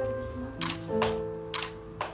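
Three camera shutter clicks in quick succession over soft, sustained background music.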